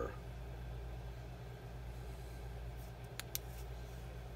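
Low steady electrical hum of room tone, with two or three faint sharp clicks a little over three seconds in as the opened plastic battery pack is handled.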